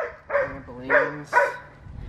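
A dog barking, about four short barks in under two seconds.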